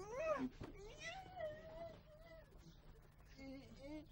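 A high, cat-like wailing cry: a short rising-and-falling call, then one long wavering note lasting about two seconds, and a faint short whimper near the end.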